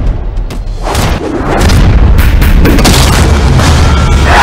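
Loud film-trailer score with deep booming bass and sharp percussive hits. It swells louder about a second and a half in, with a dense run of hits.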